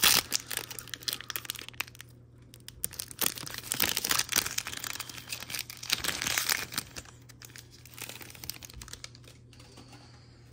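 Plastic foil wrapper of a Topps baseball card pack being torn open and crumpled by hand: a run of crinkling and tearing rustles that dies down over the last few seconds.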